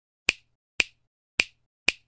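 Four sharp snaps, about half a second apart, an intro sound effect timed to the letters of an animated title appearing.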